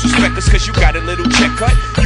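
Hip hop track: a rapped vocal over a bass-heavy beat, with a bass drum hitting about twice a second.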